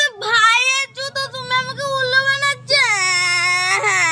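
A young girl's high-pitched voice singing in drawn-out, wavering notes, breaking off briefly about two and a half seconds in before one long held note.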